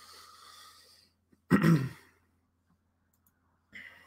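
A man breathes out in a soft sigh into a close microphone, then clears his throat once, briefly, about a second and a half in.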